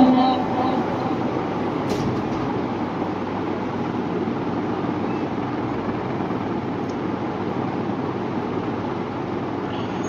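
Steady, even background noise with no clear tone, the room sound of the mosque between the imam's calls, with one faint click about two seconds in.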